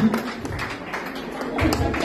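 Irregular taps and steps of shoes and boots on a wooden dance floor, over music and a few voices.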